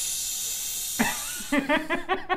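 A man's voice drawing out a long hissing 'fishhhh', in imitation of a pressure cooker letting off steam through its whistle. About a second in, laughter starts and carries on in quick bursts.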